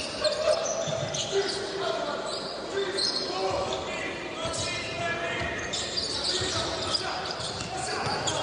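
Basketball being dribbled on a hardwood court in a large arena, with voices and crowd murmur in the background.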